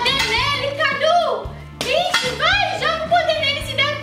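High-pitched voices over background music, with a sharp smack just before two seconds in.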